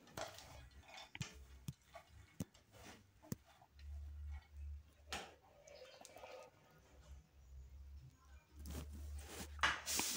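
Faint, scattered clicks and light rattles of a plastic spatula moving dry-roasted peanuts in a metal frying pan, with a few low rumbles of handling.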